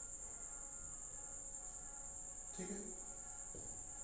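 Faint steady background with a continuous high-pitched whine and a brief low voice sound about two and a half seconds in.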